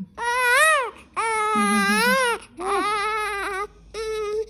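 Newborn baby crying in three long wails, each rising and then falling in pitch, with short breaths between them. The baby is fussing at the breast during an early feeding attempt, not yet latched.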